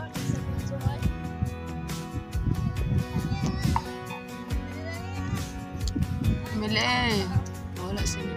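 Background music with a steady beat and sustained tones, with a loud, wavering vocal-like cry near the end.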